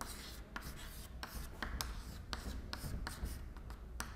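Chalk writing on a chalkboard: a run of short, irregular scratching strokes and taps.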